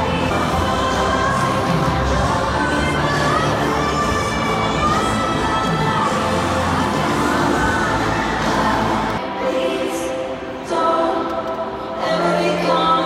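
Live pop concert music over a stadium sound system, recorded from the stands, with a wavering sung melody and a crowd cheering. About nine seconds in the bass drops out and the music thins, then it picks up again near the end.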